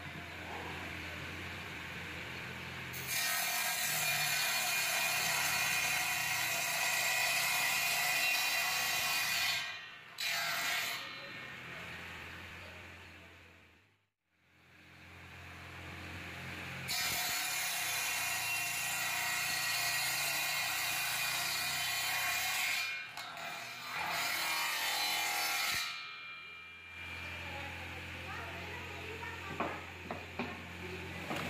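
Homemade 12-volt table saw, its circular blade driven by a car power-steering motor, running with a steady low hum and then cutting hardwood in several long, loud rips of a few seconds each. The sound fades out about halfway, comes back, and the motor is left humming unloaded near the end.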